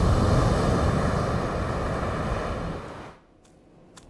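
Ocean surf and wind, a steady rushing noise with a low rumble underneath, that fades and cuts off sharply about three seconds in.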